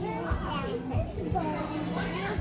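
Indistinct chatter of several children and adults in a gymnastics hall, with a few soft low thuds.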